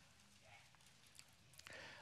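Near silence: room tone, with a few faint clicks near the end.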